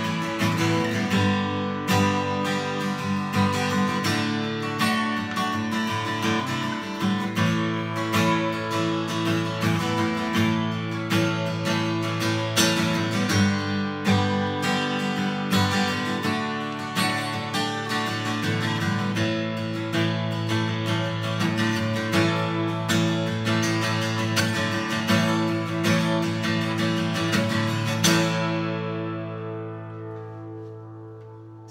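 Seagull S6+ dreadnought acoustic guitar, solid spruce top with cherrywood back and sides, strummed hard in a steady run of chords. The last chord rings out and fades near the end.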